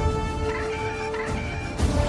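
Held orchestral chords with a porg's short bird-like calls over them, about half a second and again about a second in.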